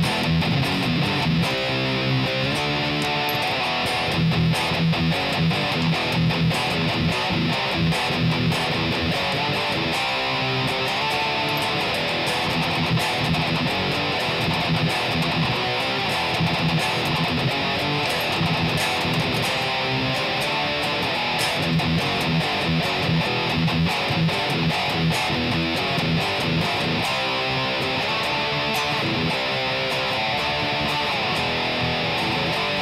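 LTD Viper-200FM electric guitar with its stock passive LTD humbuckers, played with high-gain distortion in continuous riffs that repeat on the low notes, at a steady loudness.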